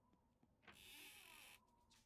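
Mostly near silence, with a faint high hiss lasting about a second from a little after the start.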